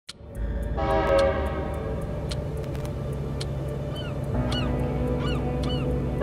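Added soundtrack intro: a low drone sets in, and a held, horn-like chord swells in about a second in, under a run of evenly spaced ticks. Short falling chirps, bird-like, repeat in the last two seconds.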